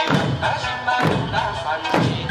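Okinawan eisa dance music with hand-held paranku drums struck about once a second, each beat a sharp thump over the melody of the accompanying folk music.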